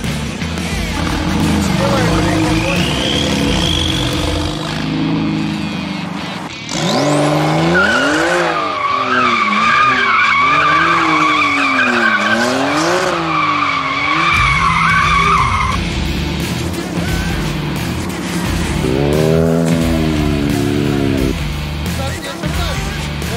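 Porsche 911's flat-six engine revving up and down again and again while the rear tyres squeal through a drifting donut; the squeal holds for about seven seconds. Near the end the engine revs up and down once more.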